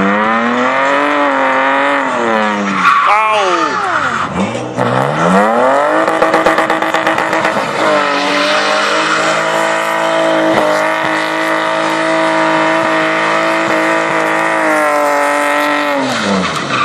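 BMW E36's M52TU 2.8-litre straight-six revving hard during a drift: the revs rise and fall for the first few seconds, dip sharply and climb again, then are held high and steady for about ten seconds with tyre squeal as the rear wheels spin in smoke, dropping just before the end.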